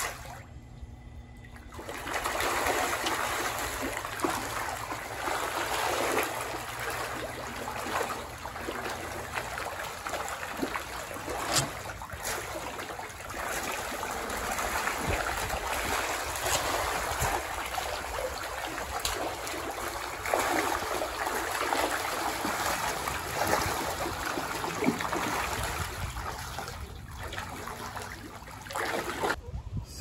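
A crowd of catfish feeding at the water's surface on thrown food scraps, splashing and churning continuously from about two seconds in until just before the end, with a few sharper splashes along the way.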